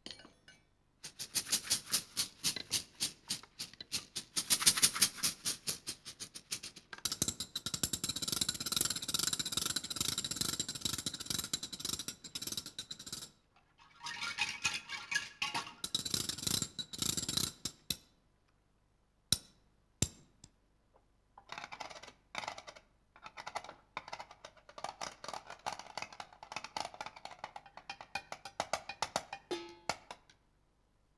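Solo hand-percussion playing. Woven caxixi basket shakers are shaken in a fast, even rattle, followed by a dense shimmering wash with steady high ringing tones. After a short break with two single sharp clicks, a run of quick pitched taps follows.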